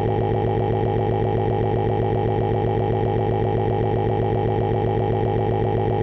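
Cepstral SwiftTalker "Damien" text-to-speech voice giving its "crying" sound: one syllable stuttered over and over so fast that it runs together into a continuous synthetic tone at one unchanging pitch.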